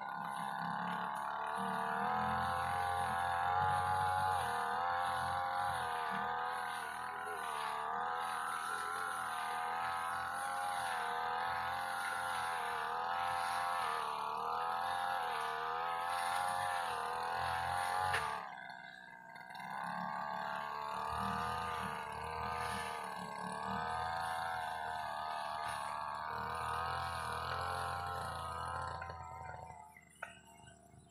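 Two-stroke brush cutter running out of sight, its engine note wavering up and down as it works through grass. It drops away for about a second a little past halfway, then picks up again and stops at the end.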